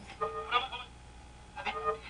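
An AM radio playing music from a station through its speaker in two short phrases. It plays weakly and poorly because its 455 kc IF transformers have been deliberately detuned.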